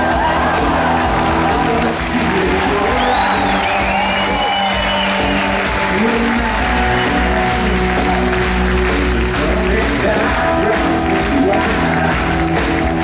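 A live rock band playing, with drums, guitars and sustained notes, while the audience cheers and whoops over it a few seconds in.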